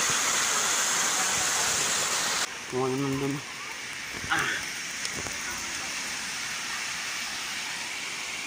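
Steady rush of a waterfall's falling water. It is loud for the first two and a half seconds, then drops suddenly to a softer rush.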